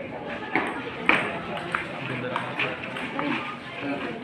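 Table tennis rally: a celluloid ping-pong ball clicking sharply off the paddles and table, the loudest hit about a second in and lighter hits following over the next two seconds, with spectators chattering behind.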